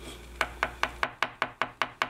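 Hair stacker tapped repeatedly on a hard surface, about five sharp taps a second, to even the tips of a bunch of deer hair for a fly's wing.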